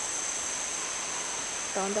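A dense chorus of rainforest insects, a steady high-pitched drone in several close bands that does not let up.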